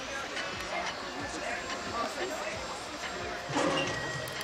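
Indistinct voices and background chatter with faint music behind them; a louder voice comes in near the end.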